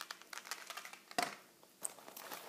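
Light clicks and rustles of small items being handled and rummaged inside a leather cosmetic pouch, with one sharper click about a second in.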